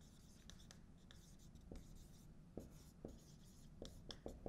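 Marker pen writing on a whiteboard: a few faint, short strokes about a second apart.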